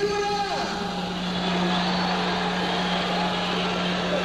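Live rock-concert recording between songs: a held chord dies away with a falling pitch about half a second in, leaving crowd noise over a steady low amplifier hum.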